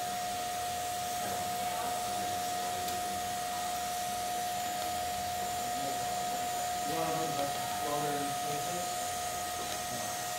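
DC lift-arc TIG welding arc on aluminum, burning with a steady hiss, with a steady high tone running underneath.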